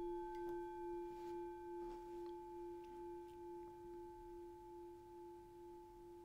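Meditation bell, struck once just before, ringing on with a clear low tone and higher overtones, slowly fading with a gentle wobble a little over once a second. It marks the end of the meditation.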